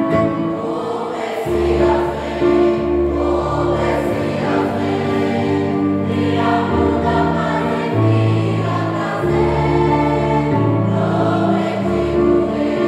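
A group of young people singing a worship song together in unison, over a backing of held chords and bass notes that change every second or two.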